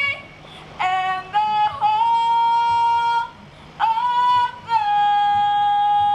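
A young woman singing into a microphone, two phrases starting about a second in and about four seconds in, each ending on a long held note with a short break between them.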